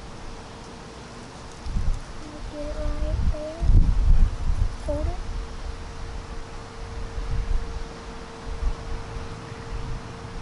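Wind buffeting the microphone in irregular gusts, strongest a couple of seconds in, with a few brief murmured vocal sounds from a young voice and a faint steady hum underneath.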